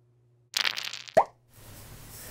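Edited cartoon sound effect: a brief sparkly hiss about half a second in, then a single short pop that bends upward in pitch.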